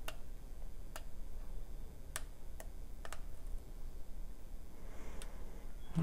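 Hot glue gun's trigger clicking as glue is squeezed into a small metal bead cap: about six sharp clicks at uneven intervals.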